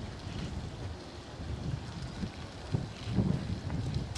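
Wind buffeting the microphone: a low rumble that swells in a couple of gusts.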